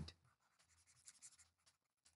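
Near silence with faint scratching of a stylus on a tablet screen, and a few light taps a little after a second in.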